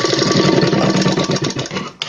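Electric sewing machine running at speed, stitching a short rough reinforcing seam with a fast, even needle rhythm, then stopping just before the end.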